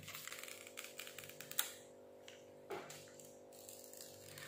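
Protective plastic film being peeled off a new iPhone SE: a quick run of small crackling clicks ending in one sharp snap about one and a half seconds in, then lighter handling of the phone. Faint background music plays underneath.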